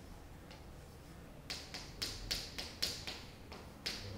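Chalk tapping and scraping on a chalkboard in a quick run of short, sharp strokes as an equation and an arrow are written, starting about a second and a half in.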